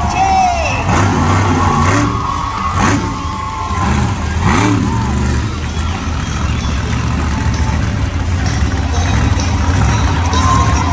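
Monster truck engine running as the truck climbs down off a crushed car and drives across the dirt, a steady deep drone with a few short surges.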